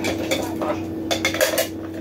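Dishes and cutlery clinking as they are handled at a kitchen counter, about six sharp clinks over two seconds.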